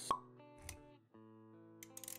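Intro sound effects over soft synthesized background music: a short, sharp pop just after the start, a low soft thud a little later, then sustained music notes with a few quick clicks near the end.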